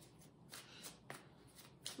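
A deck of tarot cards being shuffled overhand by hand: faint, soft swishing strokes of cards sliding over each other, about three a second.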